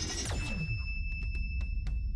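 Electronic station-ident jingle: a quick downward sweep, then a steady high electronic tone with a few sharp ticks over a low bass drone.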